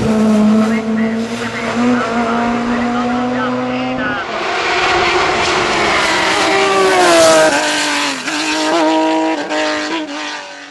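Hill-climb race car engines at full throttle. First a touring car's engine holds one steady high note. Then, after an abrupt change, an open-cockpit sports prototype's engine climbs and falls in pitch, with quick dips at gear changes near the end.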